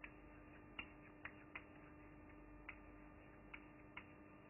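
Faint, irregular clicks and taps of a pen on a whiteboard screen as a word is handwritten, about seven in all, over a faint steady hum; otherwise near silence.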